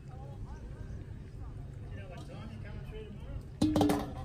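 A stainless steel mixing bowl set down on a steel bench near the end: a quick cluster of metallic clanks with a short ring, over a steady low rumble.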